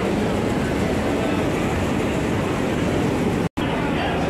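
Steady din of tea-factory machinery running. It cuts out for an instant near the end.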